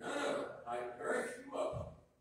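A man's voice speaking in a room, several phrases with short breaths between them.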